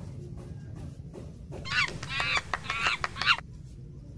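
A monkey giving a quick series of high-pitched, wavering calls that start about a second and a half in and last just under two seconds.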